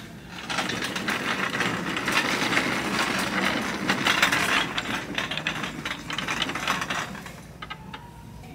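Plastic shopping cart being pushed over a hard store floor, its casters rattling continuously; the rattle dies down near the end.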